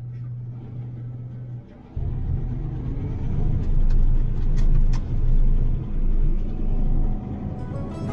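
Combine harvester running while harvesting corn, heard from inside the cab as a low rumble that swells and eases. Music comes in near the end.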